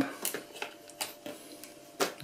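A handful of light clicks and taps of a small metal antenna plate being handled and fitted against its metal mounting boom.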